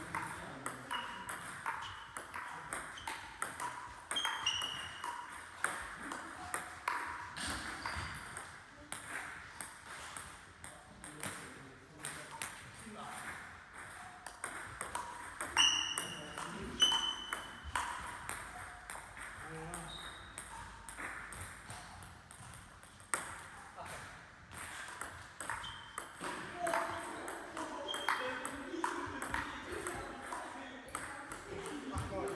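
Table tennis rallies: the ball clicks off the rackets and bounces on the table in a quick, uneven series of sharp pings and clacks. There are short breaks between points, and two louder hits come about sixteen and seventeen seconds in.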